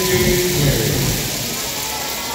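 Steady crowd noise from a large arena audience: a dense, even hiss with no clear beat.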